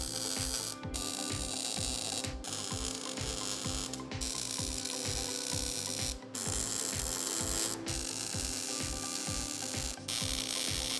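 MIG welder arc crackling as beads are run on a steel-tube motor mount. The crackle comes in several runs, broken by about five short pauses where the trigger is let off.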